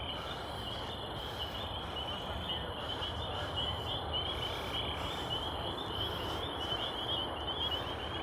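An evening chorus of small calling animals: a dense, steady run of high chirps, over a low rumble of distant road traffic.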